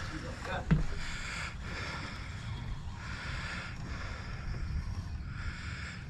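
Fishing reel being cranked in spurts to bring in a hooked fish, a soft whirring that comes and goes about once a second, over a low wind rumble on the microphone, with one short click about 0.7 s in.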